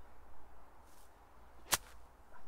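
A pitching wedge hacking a golf ball out of thick rough: one sharp strike of the club through the grass and ball near the end.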